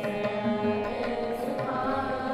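Sikh kirtan: young voices singing a hymn to the accompaniment of string instruments and tabla, with a regular low drum beat under the melody.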